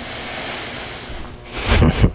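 A man's breathy exhale, then the first huffs of a chuckle near the end.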